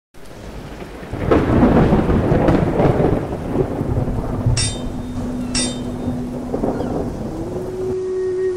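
Thunder rumbling over rain, swelling about a second in. Two sharp ringing strikes come about a second apart near the middle, and a low held tone steps up in pitch near the end.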